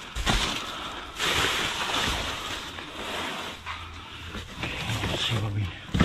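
Plastic bags and packaging rustling and crinkling as gloved hands rummage through bagged produce, loudest a second or two in.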